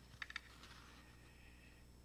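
Near silence: room tone, with a few faint quick clicks shortly after the start.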